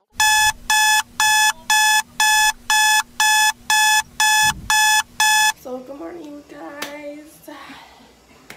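Wake-up alarm going off: eleven short, high beeps, about two a second, that stop about five and a half seconds in, followed by a voice.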